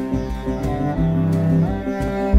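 Instrumental background music: string instruments playing held and plucked notes over a low, regular pulse.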